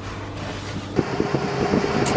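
Steady low hum of a small jet's cabin on the ground, with a few short knocks and clicks from about a second in.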